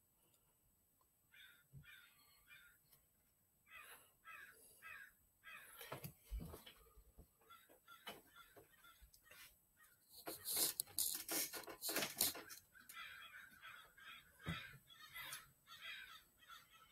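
Crows cawing in scattered groups of short calls, faint, loudest about ten to twelve seconds in.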